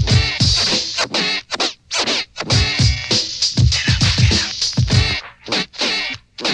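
Turntable scratching over a late-1980s hip hop drum-machine beat: a record cut back and forth in quick strokes, each stroke sweeping up or down in pitch, over heavy kick drums.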